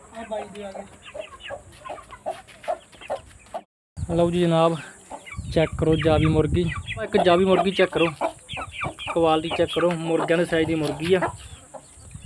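Aseel chicken clucking over and over, a hen held in the hands. The calls are soft at first, then louder and almost continuous after a brief dropout about four seconds in.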